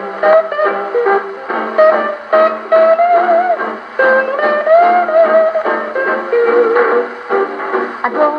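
A 78 rpm record played on an HMV 104 acoustic gramophone with a thorn needle: the instrumental break of a Hawaiian band, with plucked guitar and notes that slide in pitch. The playback has no deep bass.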